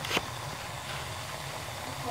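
Water boiling in a kettle on a gas stove: a steady low rumble with a hiss, and one short click just after the start.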